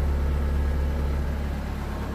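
A diesel engine idling with a steady low hum, most likely the Caterpillar 299D2 compact track loader's own 98 hp diesel, heard from beside its open cab.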